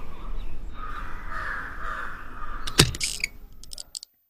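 A crow cawing, a rough call that sets in about a second in and lasts over a second. A few sharp clicks follow near the end.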